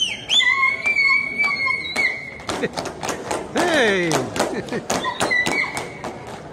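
Dancers' heeled shoes stamping and tapping irregularly on a hard hall floor, with high-pitched held vocal calls and, about halfway through, a loud falling whoop.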